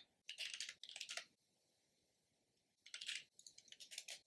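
Computer keyboard typing: quick runs of keystrokes in the first second or so and again near the end, with a pause of about a second and a half between.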